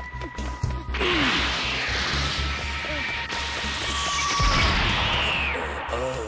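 Anime action sound effects over dramatic background music: a sudden crash about a second in, then a long rushing noise with a high falling whistle and a heavy low rumble a little past the middle.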